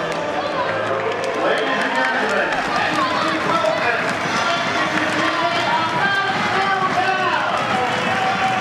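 Footballers' voices calling out and chattering over one another, with the clicking of boot studs on a concrete floor.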